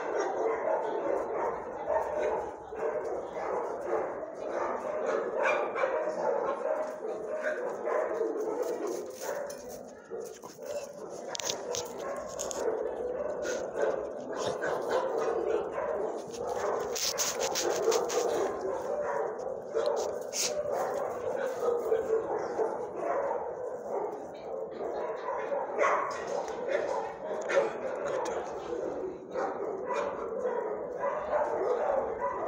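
Dogs barking and yipping without a break, many at once, as in shelter kennels.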